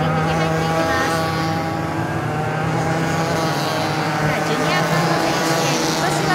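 Several junior racing karts' small two-stroke engines running together as the karts pull off the grid on a rolling start, a steady blend of overlapping engine tones.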